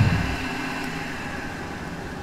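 Machinery sound effect for an oil rig drilling: a low thud at the start, settling into a steady mechanical hum that slowly fades.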